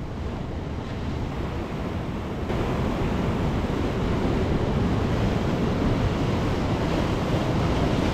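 Ocean surf washing in over rocks, a steady rush of breaking water with wind buffeting the microphone; it grows louder about two and a half seconds in.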